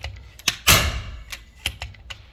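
FX Impact M3 PCP air rifle firing one shot about two-thirds of a second in: a sharp report that dies away within half a second. A few light mechanical clicks come before and after it.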